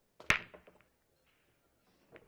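8-ball break shot: a small click of the cue striking the cue ball, then one loud sharp crack as the cue ball smashes into the racked balls, followed by a few fainter clicks as the balls scatter and collide.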